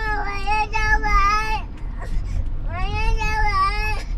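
Toddler crying in a car seat: two long, high wails with a short break about halfway, each falling in pitch at its end, over the low rumble of the moving car.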